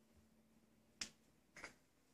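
Two short, sharp taps about half a second apart, the second a quick double, over near silence.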